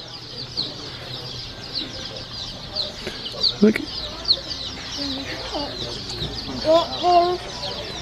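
A brooder full of baby chicks peeping without pause, many short high cheeps overlapping one another.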